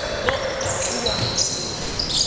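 Basketball game on a hall court: a ball bouncing and high sneaker squeaks on the floor, over a steady echoing murmur of voices in the hall.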